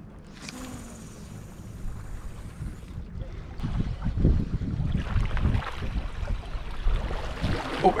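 Wind buffeting the microphone over water washing against jetty rocks, gusting louder in the second half. A thin, steady hiss runs for about two and a half seconds near the start.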